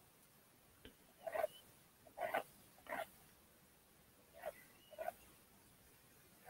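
Palette knife scraping and dabbing acrylic paint onto stretched canvas: a series of about six short, faint strokes.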